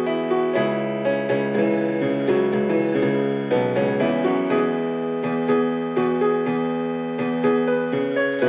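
Solo piano playing a slow, gentle piece: a melody of single notes struck a few times a second over sustained low chords.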